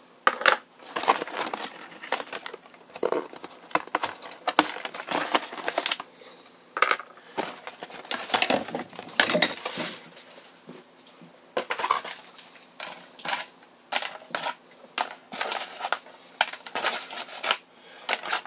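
Hard plastic toy parts of a chrome-plated gold Tomica Drive Head transforming robot clicking and clattering as they are pulled apart one by one and set down, with irregular sharp clicks and knocks throughout.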